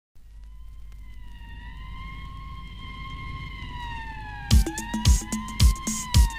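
Intro of a recorded pop song: a slowly wavering siren-like tone over a low rumble that grows louder, then a drum beat comes in about four and a half seconds in, with a heavy kick about twice a second.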